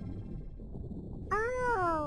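A single wailing, meow-like vocal cry starting about a second and a half in, rising and then falling in pitch, over a low steady rumble.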